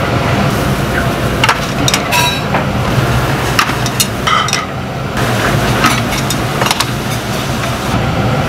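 Commercial kitchen noise: a steady low rumble from the bank of gas burners heating earthenware soup pots, with scattered clinks and knocks of metal ladles against pots and bowls, one ringing clink about two seconds in.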